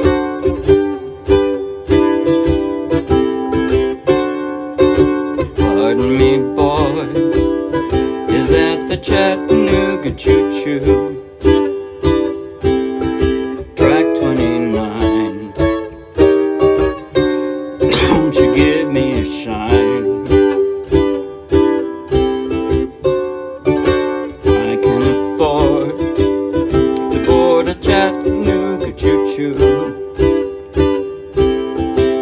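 Ukulele strummed in a steady rhythm, moving from chord to chord.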